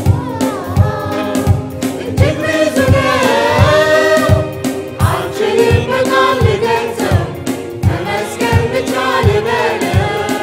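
Mixed choir of men and women singing a gospel song together over a band, with a steady drum beat of low strikes running underneath.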